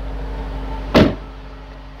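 Trunk lid of a 2014 Dodge Challenger slammed shut once, about a second in, with a single solid thud.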